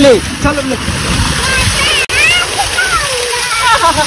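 Heavy water gushing out of a large ribbed pipe and splashing onto a person sitting under it and into a muddy channel, with voices over the rush of water. The sound breaks off for an instant about two seconds in.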